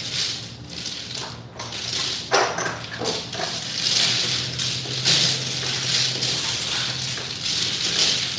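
Mahjong tiles being shuffled by several pairs of hands on a tabletop: a continuous clatter of many tiles knocking and sliding against one another, swelling and easing as the hands sweep.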